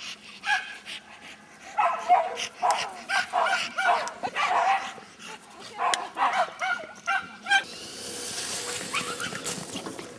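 A dog barking and yelping in quick, excited bursts while held on a lead before being let go after a coursing lure. Near the end the calls stop and a steady hiss takes over.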